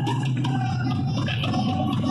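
Live band playing through a loud PA, with held high notes over a heavy, steady bass.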